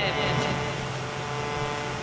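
A steady low drone with faint held tones, slowly fading a little.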